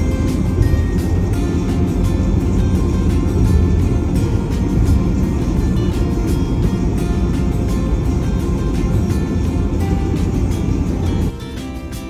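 Steady low road rumble of a car driving at highway speed, heard from inside the cabin, under background music; the rumble cuts off suddenly about a second before the end.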